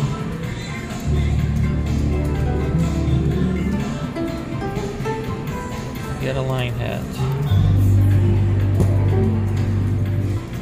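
IGT She's a Rich Girl video slot machine spinning its reels twice. Each spin plays a steady low hum: the first starts about a second in and stops near four seconds, when the reels land. The second starts at about seven and a half seconds. Casino music and voices run underneath throughout.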